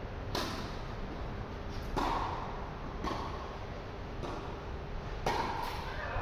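Tennis rally: a string of sharp pops from rackets striking the ball and the ball bouncing on the court, roughly one a second, with two in quick succession near the end.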